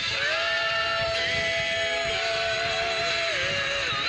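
A female singer holding one long, high sustained note for about three seconds, ending with a small dip in pitch, over band accompaniment in a live concert performance, with audience clapping and cheering beneath.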